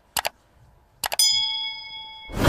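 Sound effects of a like-and-subscribe animation: two quick mouse clicks, then about a second in another pair of clicks followed by a bright bell ding that rings on and fades.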